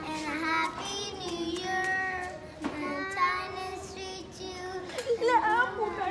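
Young girls singing, holding long notes.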